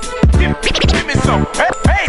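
Turntable scratching: a vinyl record pushed back and forth by hand, its sound cut in and out with the Rane mixer's crossfader, making quick rising and falling squeals in rhythm. Underneath runs a hip-hop beat with a heavy kick drum.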